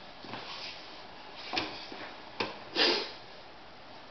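A few short sniffs, the loudest about three seconds in, with a sharp click just before it.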